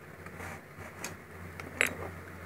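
Quiet handling of glass perfume bottles on a table, with faint light clicks and a brief sharper sound near the end.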